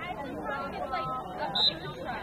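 Spectators chattering, with a short, sharp referee's whistle blast about a second and a half in that starts the draw.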